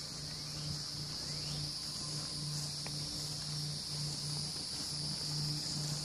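A steady, high-pitched insect chorus.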